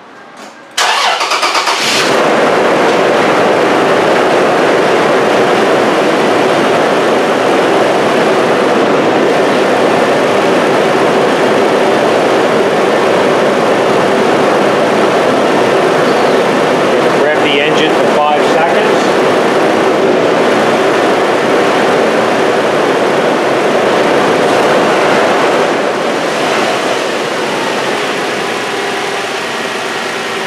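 Toyota 4Runner engine started with the hood open: it catches about a second in and then idles steadily, a little quieter near the end. It is started to run a charging-system test on a battery the tester has just failed.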